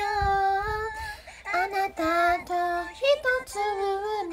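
A young woman singing in a light, high voice with little or no accompaniment: one long held note in the first second, then a run of shorter notes moving up and down.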